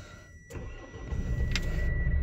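Mitsubishi L200's 2.4 DI-D four-cylinder diesel engine starting about half a second in and settling into a steady idle.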